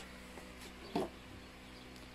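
Quiet workshop room tone with a faint steady hum, and one short unidentified sound about a second in.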